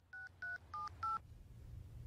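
Mobile phone keypad dialling tones: four short two-tone beeps, about three a second, as a number is keyed in, then a faint low hum.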